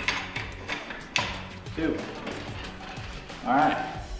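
A few sharp metal clicks and clacks, the loudest about a second in, as feed tray parts of a Mark 19 40 mm automatic grenade launcher are handled and set in place, over background music.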